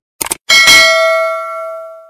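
A short crackly burst, then a single bell ding about half a second in that rings out with several clear tones and fades until it is cut off at the end.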